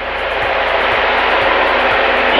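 HF radio static: a steady hiss that grows slowly louder, heard through the aircraft's headset audio over the low drone of the single-engine plane.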